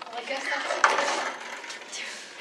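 Metal-framed school chairs and desks clattering and scraping as they are shoved around, with a sharp knock about a second in.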